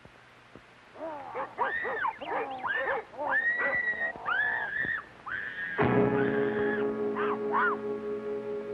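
A run of high, wavering shrieks that rise and fall, one held briefly, on the soundtrack of a 1968 TV commercial. About six seconds in, a sustained music chord comes in and holds.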